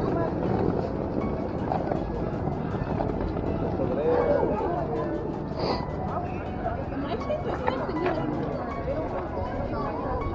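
Trick-or-treaters' voices, children and adults talking and calling out over one another with no clear words, over a steady low street rumble.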